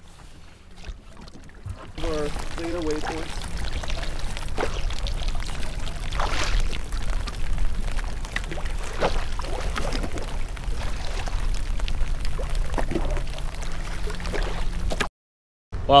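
Strong wind buffeting the microphone of a small fishing boat on rough, choppy water, with scattered splashes and slaps of waves against the hull. A voice is heard briefly about two seconds in.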